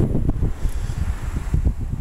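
Wind buffeting the microphone: an irregular low rumble with brief gusty bumps.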